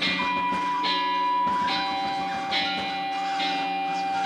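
Electronic keyboard music: a bell-like synth pattern repeating a little faster than once a second over a low pulse, with a long held pure tone that drops to a lower pitch about a second and a half in.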